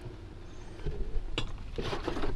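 Liquid fish fertilizer pouring from a plastic jug into a plastic watering can, faint, with one light click about halfway through.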